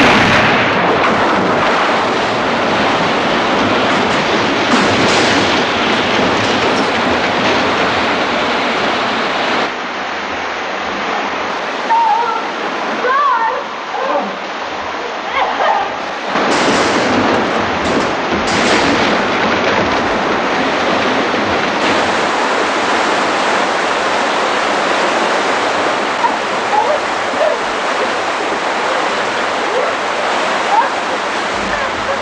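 Loud rushing, churning water flooding an enclosed room, steady and heavy throughout, a little quieter from about ten seconds in and surging louder again a few seconds later. Short human voice sounds rise briefly above the water around the middle.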